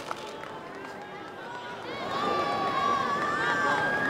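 A crowd of voices murmuring, then shouting and cheering louder from about halfway through, with long held calls over one another.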